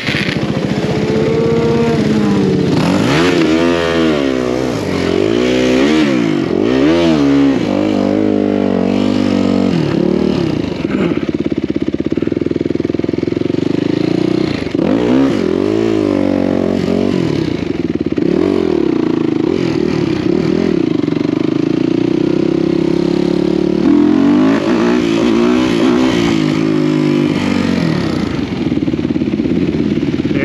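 Supermoto motorcycle engine heard from on board, revving up and dropping back again and again as it rides through a run of curves.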